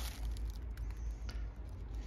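Faint rustling with small scattered clicks as a hand handles the leaves of a potted begonia.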